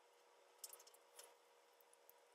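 Near silence with a faint steady hum, broken by two brief faint clicks or rustles, about half a second and a second in, from hair and a curling iron being handled as a section of hair is wound onto the barrel.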